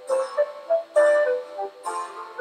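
Background Baroque-style harpsichord music, a run of plucked notes with sharp attacks that die away quickly.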